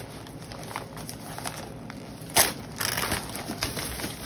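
Newspaper packing crinkling and rustling as a newspaper-wrapped bundle is lifted out of a packed box, with one loud sharp crackle about halfway through.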